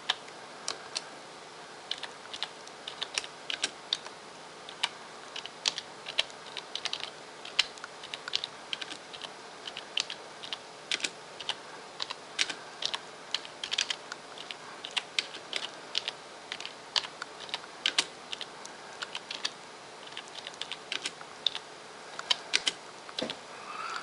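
Typing on a computer keyboard: irregular key clicks, several a second, with short pauses in between, as a caption is typed.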